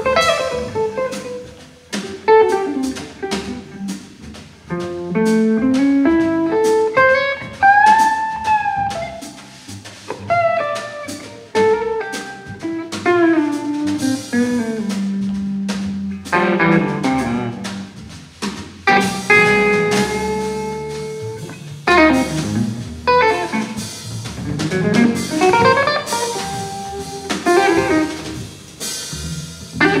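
Live jazz trio playing: electric guitar lines over plucked upright bass and a drum kit with cymbals. The guitar plays a melody that runs up and down, with one note bent up and back about eight seconds in.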